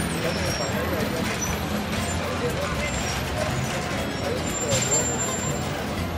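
Street ambience in a busy town square: people talking in the background over the low running of bus and traffic engines, with a short high hiss about five seconds in.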